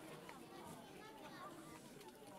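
Near silence: faint background noise.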